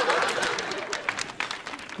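Audience applause after a punchline, many hands clapping and dying away toward the end.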